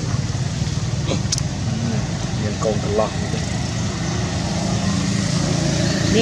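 A steady low hum like an idling motor, with a few short high squeaks from a young long-tailed macaque about two and a half to three seconds in.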